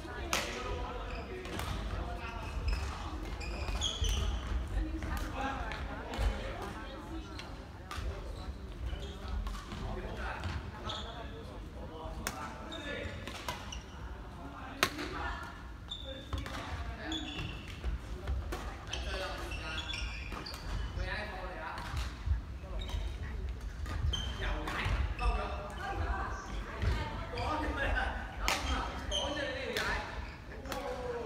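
Badminton rackets hitting a shuttlecock in rallies: sharp clicks at irregular intervals, echoing in a large sports hall, with people's voices chattering throughout.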